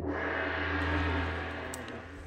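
A single gong strike with a low ring that fades slowly.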